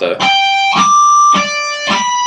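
Electric guitar natural harmonics picked one after another, four notes in about two seconds, each ringing out as a clear high tone.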